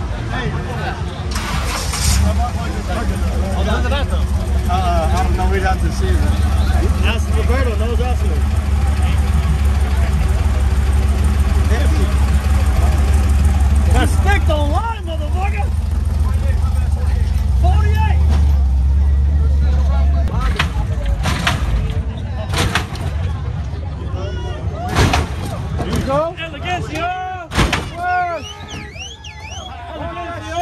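A lowrider car's engine starts about two seconds in and runs with a loud, steady low drone until about twenty seconds in, with crowd voices shouting over it. Near the end come a few sharp bangs.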